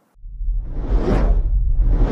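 Cinematic logo-sting sound effects: a deep low rumble swells in with a whoosh that rises and falls about a second in, and another whoosh builds near the end.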